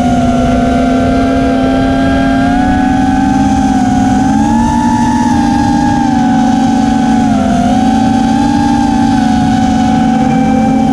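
TBS Oblivion FPV drone's motors and propellers whining in flight, heard through its onboard camera: a steady buzzing hum whose pitch wanders with the throttle, rising a few seconds in and dipping briefly about three-quarters of the way through.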